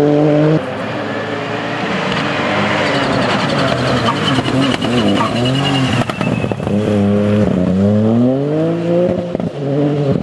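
Ford Fiesta rally car's three-cylinder turbo engine at full stage pace. A steady high-revving note breaks off suddenly about half a second in. The pitch then drops and rises through gear changes and lifts, and near the end climbs steadily as the car accelerates hard up through a gear.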